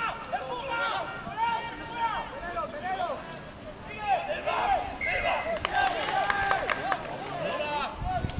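Several voices shouting and calling over one another on a rugby pitch during a ruck, with a few short sharp knocks in the second half.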